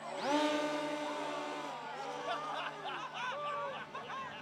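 A person's voice lets out a long call that rises and then holds for about a second and a half. Several people then laugh and chatter over one another.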